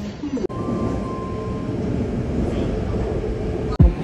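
Taipei Metro train running at a station platform: a steady low rumble with a steady motor hum, and a brief higher tone in the first couple of seconds. An electronic beat cuts in just before the end.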